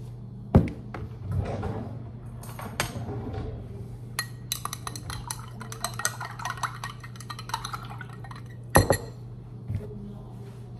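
Glass tumbler with a metal straw clinking: a sharp knock about half a second in, then a run of quick light clinks for about four seconds, and a louder knock near the end. A steady low hum sits underneath.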